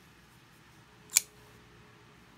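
A single sharp metallic click about a second in: the blade of the Giantmouse GM3 liner-lock pocketknife snapping into place as it is worked, after its pivot has been tightened back down.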